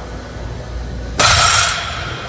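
Loaded barbell with rubber-coated plates dropped from the top of a deadlift, hitting the floor about a second in with a loud crash that dies away over about half a second.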